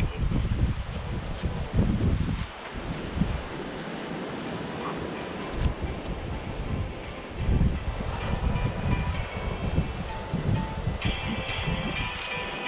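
Wind buffeting the microphone: irregular low gusts over a steady rushing hiss. Background music comes in near the end.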